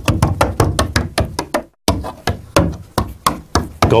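Foley performance: a rapid run of sharp knocks and taps on wooden boards, about five a second, with a brief break a little under two seconds in.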